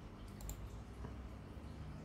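A few faint clicks, about half a second in and again near one second, over a low steady hum: computer controls being clicked to start a video playing.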